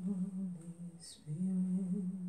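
A woman humming held notes in two long phrases, with a short break between them about a second in.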